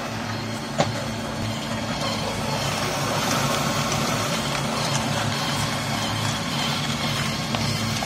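Small electric-motor-driven flat-die pellet mill running steadily while pressing coal dust into pellets: a constant motor hum with a grinding rasp over it. There is one sharp click about a second in, and the sound grows a little louder after a couple of seconds.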